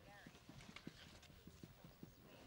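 Near silence, with faint irregular knocks about four a second and faint voices underneath.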